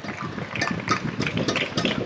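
Applause in a sports hall after a goal: many hand claps running together.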